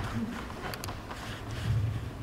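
Quiet hall room tone with a low hum and two faint, sharp clicks close together a little under a second in.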